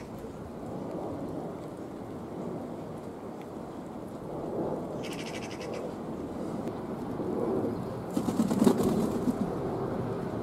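Feral pigeon cooing low and repeatedly, growing louder toward the end. Two short bursts of rapid clicking come about five seconds in and near nine seconds, the second with the loudest cooing.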